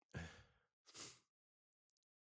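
A man sighing: two short, faint breathy exhales, the second about a second after the first.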